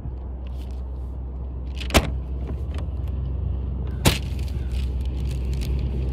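A steady low rumble, like a motor running, with two sharp clicks, one about two seconds in and one about four seconds in.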